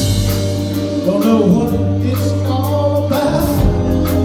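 Live rock band playing, with a man singing lead over held organ chords and electric bass.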